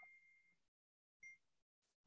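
Near silence, with one faint short blip just over a second in.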